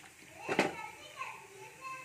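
Children's voices in the background, high-pitched and indistinct, with one sharp knock about half a second in as the wooden spatula strikes the clay cooking pot.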